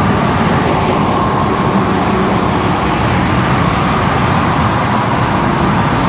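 Steady, continuous roar of road traffic, with no distinct passing vehicles or other events standing out.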